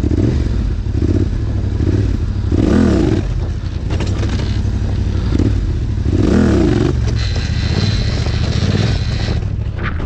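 Yamaha Raptor quad's single-cylinder engine running under the rider at low speed, revved up and back down twice, about three seconds in and again near six and a half seconds.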